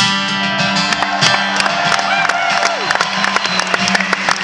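Acoustic guitar strummed and picked through a live arena PA, notes ringing between repeated strokes, with crowd noise underneath.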